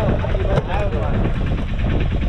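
Fishing boat's engine running steadily with a fast, even beat. A single sharp knock about half a second in.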